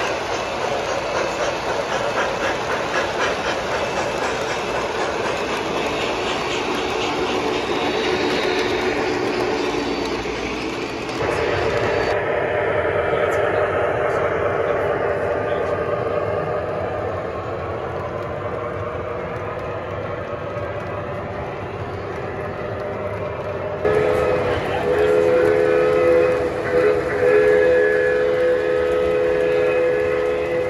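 O-gauge three-rail model trains running, with wheels clattering over the track joints and sound-system running effects. From about three-quarters of the way in, a multi-tone horn signal from a locomotive's onboard sound system sounds in a few blasts, louder than the running sound.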